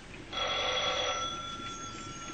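Telephone bell ringing: one long ring that comes in just after the start and slowly fades toward the end.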